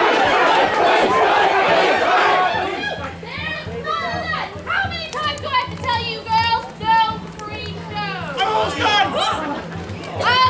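Crowd of spectators chattering, many voices at once; about three seconds in the chatter drops and a single voice with rising and falling pitch carries over a low steady hum.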